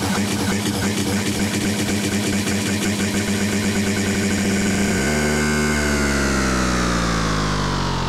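Tech house music with a steady dance beat; about five seconds in the beat drops out and the held sound slides steadily down in pitch, like a record slowing to a stop, as the mix is brought to an end.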